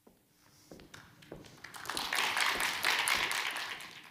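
Audience applause: a few scattered claps at first, swelling to a full round about two seconds in and dying away near the end.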